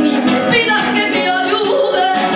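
A woman singing a flamenco rumba with wavering, ornamented pitch over acoustic guitar accompaniment.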